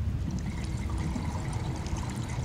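Underwater ambience in a strong reef current: a steady low rush of moving water, with faint scattered clicks above it.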